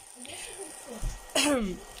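Lavash-wrapped shawarma rolls frying in a pan: a soft, steady sizzle. A short spoken sound cuts in about a second and a half in.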